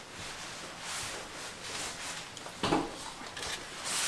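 Crunching and chewing of crisp oven-baked potato chips, with one sharper, louder crunch a little under three seconds in.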